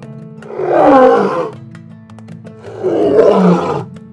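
A person's voice imitating a lion's roar, twice: once about a second in and again near three seconds, each roar sliding down in pitch as it ends. Acoustic guitar music plays underneath.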